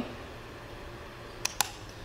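Small electric fan running with a faint steady whir. Two quick clicks close together about a second and a half in.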